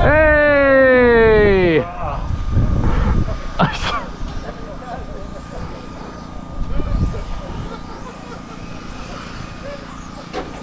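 Electric RC touring car motor whining, falling steeply in pitch over under two seconds as a car passes close and slows. This is followed by quieter whines of cars lapping the track, with one brief rising sweep a few seconds in.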